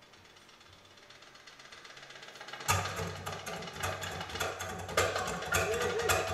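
Live folk music: a quiet passage swells gradually, then about three seconds in the full band comes in loudly, with sharp goblet drum strikes, strummed acoustic guitar and a recorder melody.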